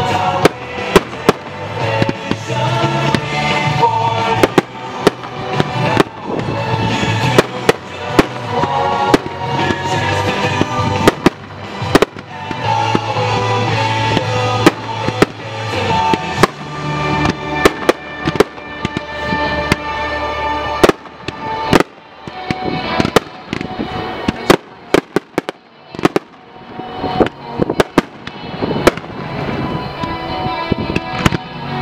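Fireworks display: a rapid, irregular series of sharp bangs and crackles from aerial shells and rockets, heard over music. The music's bass line drops out about two-thirds of the way through, and the bangs then stand out more sparsely against the music.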